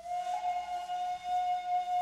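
A shakuhachi flute playing one long, breathy note held steady in pitch, over a faint low drone.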